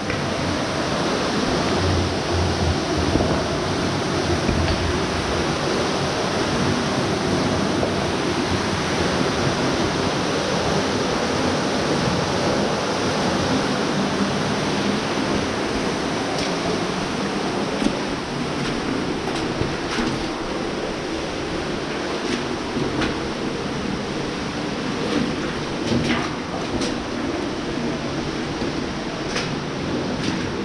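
Steady rush of running water, with a few sharp clicks or drips from about halfway on.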